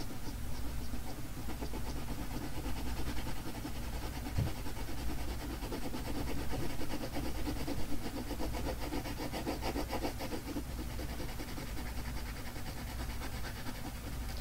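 Pencil shading on paper: rapid back-and-forth strokes of the lead rubbing across the sheet.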